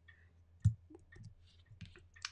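Scattered clicks and taps of a computer mouse and keyboard, with one louder thump about two-thirds of a second in.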